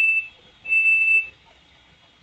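High-pitched electronic beeping, a single steady tone sounding in beeps about half a second long, roughly once a second: one beep ends just after the start and another sounds about a second in.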